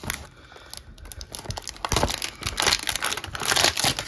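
Clear plastic wrapping crinkling and tearing as a trading-card box is opened by hand, with cardboard rustling. A quick run of crackling noise builds after a second or so and is loudest in the second half.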